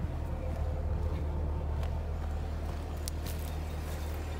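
Chevrolet Camaro SS's V8 idling, a steady low hum, with a few footsteps on pavement.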